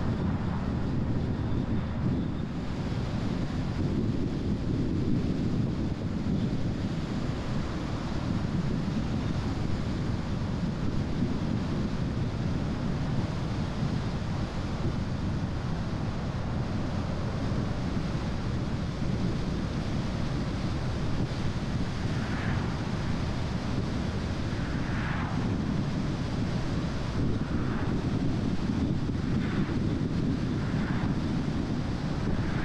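Car driving at road speed: a steady low rumble of tyre and wind noise, with wind buffeting the microphone. A few faint, brief higher swishes come through in the last several seconds.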